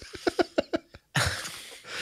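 A man's laughter: a quick run of short chuckles that breaks off about halfway, then a breath drawn in.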